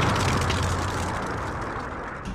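Explosion sound effect for a fireball title graphic: a loud, noisy roar that slowly fades, over a low rumble.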